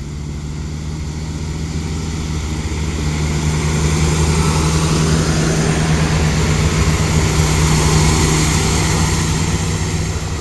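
Siemens Desiro Classic diesel railcar (DB class 642) pulling out of the station and passing close by: a steady, low underfloor diesel-engine drone with wheel and rail rolling noise. It grows louder as the train nears, is loudest in the second half, and eases off near the end as it moves away.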